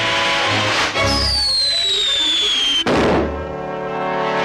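Cartoon firework sound effects over orchestral music: a fizzing hiss, then a falling whistle lasting nearly two seconds that ends in a sharp bang about three seconds in.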